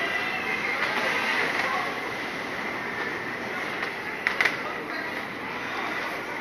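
Teacup ride running: a steady mechanical rumble with a faint whine from the turning platform and cups. Riders' voices come through, and there are a couple of sharp clicks about four and a half seconds in.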